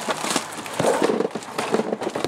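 A flood-damaged household appliance, plastic and metal, being handled and shifted, giving irregular knocks and rattles.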